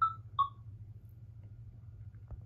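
Two short, high electronic chirps of a notification sound, the second about half a second after the first and slightly lower, over a steady low hum.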